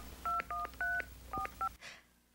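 Touch-tone telephone keypad dialing a number: about six short two-tone beeps in an uneven run.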